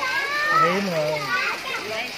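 Several voices talking over each other, children's high-pitched chatter among them, with a lower voice speaking briefly in the middle.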